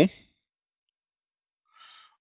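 A man's speech trails off, then near silence, broken near the end by a short, faint intake of breath before he speaks again.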